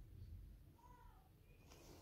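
Near silence, with a faint short pitched call about a second in and a faint brief scratchy rustle near the end.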